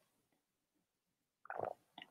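Near silence, broken near the end by one short, soft mouth or throat noise from the person at the microphone just before she speaks again.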